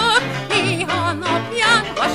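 A woman singing a Hungarian nóta with heavy vibrato over instrumental accompaniment.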